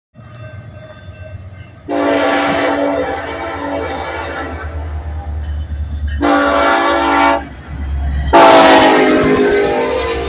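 Air horn of a Union Pacific SD70AH diesel locomotive leading an intermodal train, sounding three blasts: a long one about two seconds in, a short one around six seconds, and a loud long one from about eight seconds that drops slightly in pitch as the locomotive passes. A steady low diesel engine rumble runs underneath.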